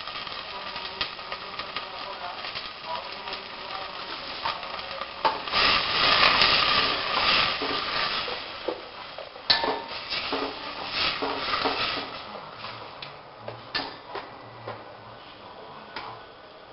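Ground spices sizzling in hot oil in a stainless-steel pot while a steel ladle stirs and scrapes them, with sharp clinks of the ladle against the pot. The sizzling swells about five seconds in, then settles and grows quieter toward the end.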